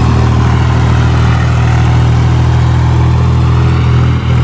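Swaraj 735 FE tractor's diesel engine running steadily and loudly close by while it pulls a sowing implement across tilled soil.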